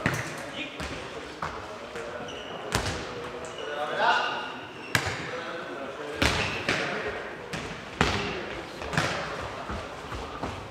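A nohejbal ball kicked and bouncing on a wooden sports-hall floor during a rally: several sharp impacts a second or two apart, each ringing on in the hall's echo. Players' voices are heard between the hits.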